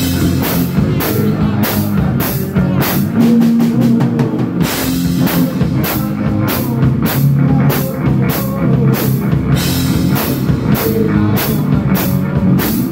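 A live heavy rock band playing: electric guitar riffing over a drum kit, the drums keeping a steady beat of about two to three hits a second, with a quick run of hits about three seconds in.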